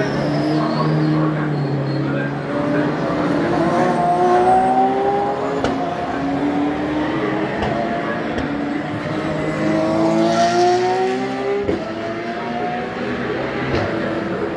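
Porsche 911 race car's flat-six engine accelerating hard through the gears: the revs climb in several rising sweeps, each broken off by an upshift.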